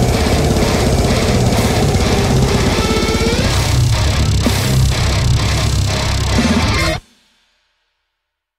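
Heavy metal recording with extremely fast drumming, very rapid kick drum and snare strokes under distorted guitars. The music cuts off abruptly about seven seconds in.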